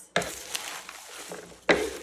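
Wooden salad servers tossing dressed salad greens and toppings in a wooden bowl: a steady rustling and scraping of leaves against wood, with a sudden louder burst near the end.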